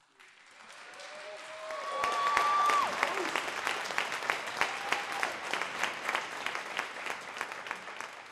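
Audience applauding and cheering: the clapping swells over the first two seconds, with a long high whoop from one voice about two seconds in and another shorter call near the middle, then eases off a little.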